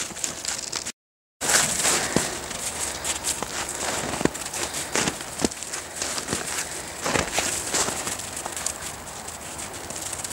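Footsteps crunching in snow, irregular crackly steps over a noisy outdoor background, with a brief cut to silence about a second in.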